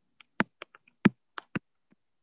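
Irregular sharp clicks and taps at a computer keyboard, about nine in two seconds, the loudest about a second in.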